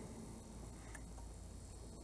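Faint, steady low rumble inside a car's cabin during rain, with a faint high steady whine above it.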